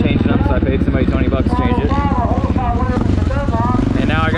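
Honda XR600R's big single-cylinder four-stroke engine running at low revs as the bike rolls slowly, with a voice talking over it.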